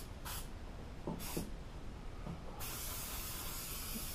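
Aerosol can of 3M Super 77 spray adhesive hissing: two short bursts, then a long continuous spray from about two and a half seconds in. He is laying on a heavier coat than usual for new foam.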